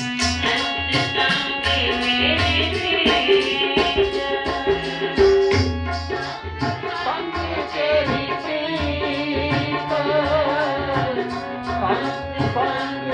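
Harmonium and tabla accompanying Sikh kirtan: the harmonium holds steady reed chords while the tabla keeps a steady beat with deep bass strokes. A woman's voice sings over them, wavering in pitch, plainest in the second half.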